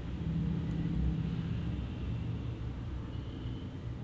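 Steady low background rumble, a little louder in the first second.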